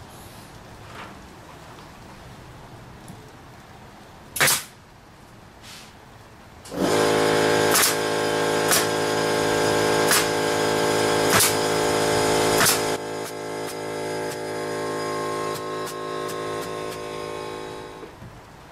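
A pneumatic stapler fires a single sharp shot into a wooden record shelf's back panel. An air compressor then starts and runs with a steady hum, while the stapler fires about five more sharp shots roughly a second and a half apart.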